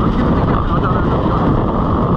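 KTM 300 two-stroke enduro bike's engine running steadily under way on a dirt trail, heard from the rider's camera with wind noise on the microphone.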